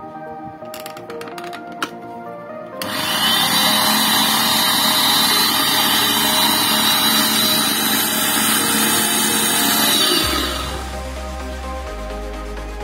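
Electric blender motor base, with no jar fitted, starts up about three seconds in and runs at a steady speed for about seven seconds before switching off. A few sharp clicks come just before it starts. Background music plays throughout.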